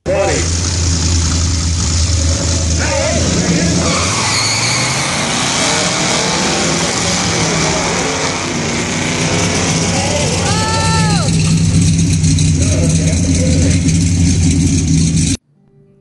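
A classic Ford Mustang and a pickup truck drag racing, their engines running hard as they launch and run down the strip. A voice calls out about eleven seconds in, and the sound cuts off suddenly near the end.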